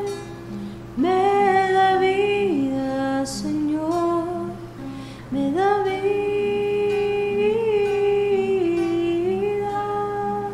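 A hymn sung by one voice over a plucked acoustic guitar, the communion song of a Mass: two long phrases of held notes, the first beginning about a second in and the second about five seconds in.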